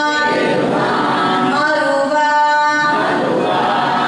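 A woman singing a devotional verse unaccompanied into a microphone, drawing out long held notes.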